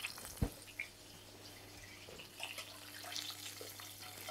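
Faint crackling sizzle of a sea bream fillet frying in a non-stick pan, with a single knock about half a second in and a few light clicks. A steady low hum runs underneath.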